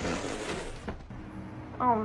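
Foam play-couch cushions toppling over under a cat's weight: a sudden soft rustling crash that fades over about a second, with a short knock just before the second mark. A woman's voice says 'Oh' near the end.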